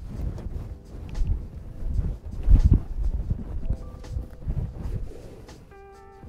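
Handling noise and twigs brushing against a camera-mounted microphone as it is pushed in among willow branches and grass: irregular low thumps and rustling, loudest about halfway through.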